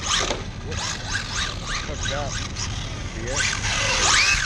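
Electric RC drift cars' motors whining, revved up and down in quick repeated rises about twice a second over a steady low rumble, loudest near the end as one car slides close by.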